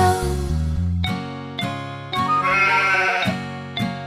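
Children's-song backing music with a steady beat, with a sheep's wavering bleat ('baa') about two seconds in that lasts about a second. A sung note trails off just after the start.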